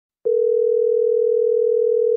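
Telephone ringback tone heard down the line as a call is placed: one steady, loud two-second ring at a single pitch.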